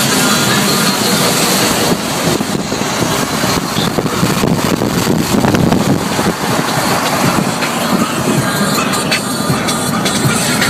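Inside a moving car: steady road noise at a loud, even level, with car-radio music under it and scattered clicks and knocks.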